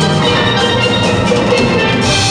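Live steel band: many steel pans playing a melody together over drums and percussion.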